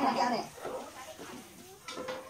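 People's voices: a wavering vocal sound that trails off about half a second in, then faint background talk.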